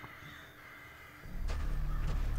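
Crows cawing as a flock is startled into flight, in a TV drama's soundtrack. A low rumble of tense music comes in after about a second and becomes the loudest sound.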